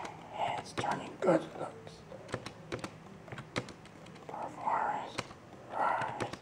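Low, muffled voice with many short, sharp clicks and taps scattered through it.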